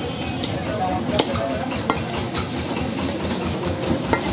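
Busy butcher's stall at a meat market: a steady din of background noise with a few scattered light knocks and clatters of handling at the wooden chopping block.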